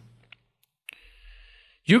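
A pause in a man's narration: two faint clicks, then a short in-breath lasting about a second before he speaks again near the end.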